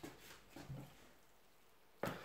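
Near silence: room tone, with a few faint, brief soft sounds in the first second.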